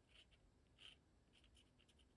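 Faint scratching of a dip pen's metal nib on 300 gsm watercolor paper, a few short strokes.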